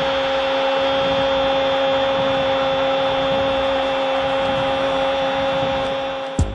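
Football TV commentator's long goal cry, "gooool", held as one unwavering note over steady stadium crowd noise.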